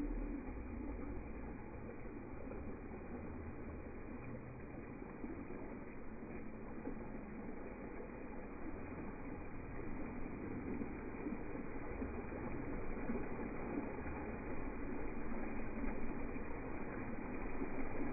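Steady splashing and rushing of water spilling from the spa and rock waterfall into a swimming pool, slowly growing louder.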